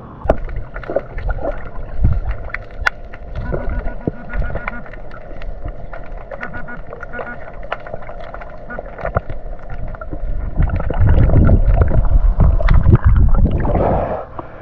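Water heard through a camera dipped underwater: a muffled rumble with many small clicks and knocks. In the last few seconds it becomes louder low sloshing and splashing of water.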